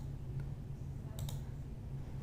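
Computer mouse click about a second in, over a low steady hum.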